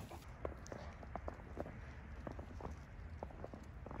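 Faint, irregular soft knocks and clicks, a few a second, of a horse shifting about in its stall, over a low steady rumble.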